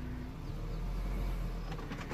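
Low, steady rumble of a car's engine as the car starts to roll forward slowly.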